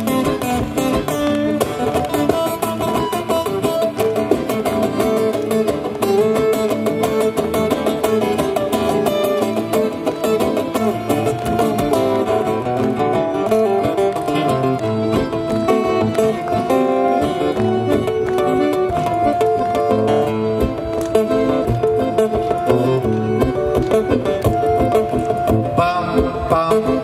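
Live instrumental break of two strummed acoustic guitars with a button accordion playing held notes over them.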